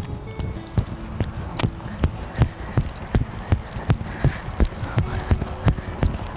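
Heavy hoofbeats of a very tall Belgian draft horse cantering on grass under a rider, about three thuds a second.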